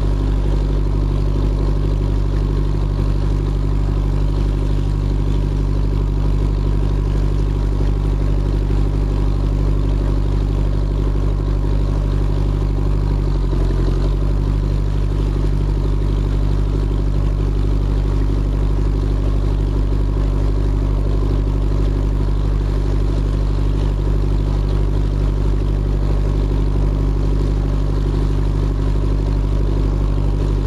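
Narrowboat's inboard diesel engine running steadily at cruising speed, a low, even drone whose note dips briefly about halfway through.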